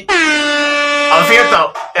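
An air horn sound effect gives one long, steady blast of about a second and a half. A man's voice briefly overlaps it near its end.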